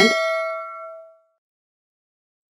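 A single metallic ding, several bell-like tones ringing together and fading out within about a second.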